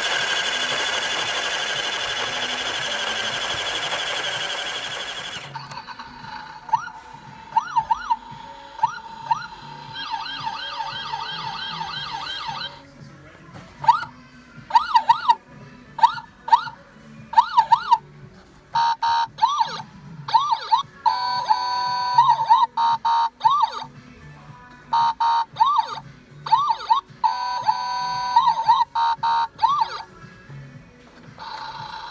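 A loud hissing blast lasting about five seconds. Then an electronic toy police-car siren: quick rising-and-falling wails over a steady electronic tone, sounding in repeated bursts with short gaps between them.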